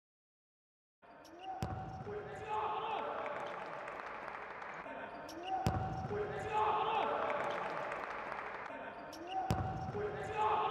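A futsal ball struck hard on an indoor court with a sharp thud, followed by shouting voices; the same few seconds of thud and voices play three times, about four seconds apart.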